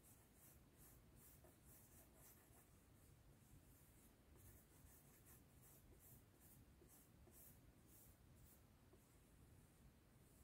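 Faint, soft strokes of a small brush being drawn over wet latex on a foam sample, about two strokes a second, spreading and smoothing the coat.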